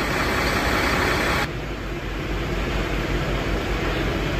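Fire engine running with its pump compartment open, a steady loud rushing noise; about one and a half seconds in it cuts off abruptly to a lower, steady engine-like rumble.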